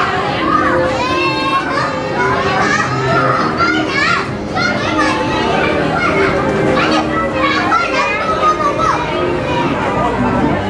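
Many children's voices shouting, squealing and chattering at once, the continuous din of a busy crowd of kids.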